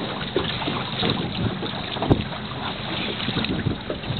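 Wind buffeting the microphone over water, an uneven rushing noise, with a low thump about two seconds in.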